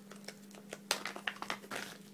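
Clear plastic packaging crinkling and crackling as it is handled and opened by hand, a scattered run of sharp clicks with the loudest about a second in. A faint steady hum sits underneath.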